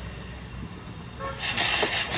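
A steady low hum, then from about halfway through a quick run of rough rustling and scraping noises as a hand works over a steel saucepan on the stove.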